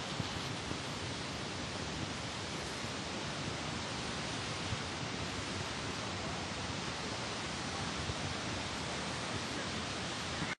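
Steady rain falling on a street, an even hiss with a few faint clicks.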